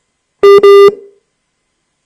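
Two loud electronic phone beeps in quick succession, a low buzzy tone with the second beep longer than the first, about half a second in.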